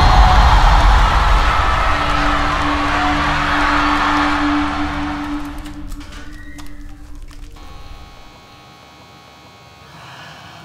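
A large stadium concert crowd cheering over a held musical note, fading out over about six seconds into quiet room tone with a faint hum.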